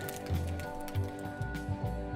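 Background music: held tones over a steady, pulsing bass beat.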